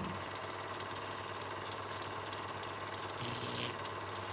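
Steady low background hum of the recording room with faint hiss, and one brief noise about three seconds in.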